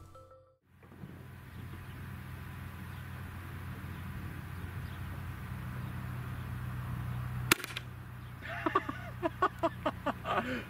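A single 12-gauge shotgun shot about seven and a half seconds in, a low-velocity Grimburg HP68 less-lethal nylon-and-copper slug being fired, over a steady low background hum.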